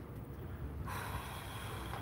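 A person's breath rushing out hard close to the microphone, starting about a second in, over a low steady rumble.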